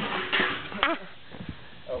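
A man laughing and crying out with excitement in short bursts, then a few faint ticks as the sound drops away.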